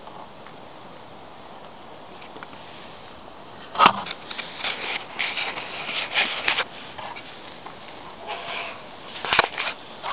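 Stiff clear plastic packaging crackling and clicking as it is handled: a sharp click about four seconds in, about two seconds of dense crackling, then a few more sharp clicks near the end.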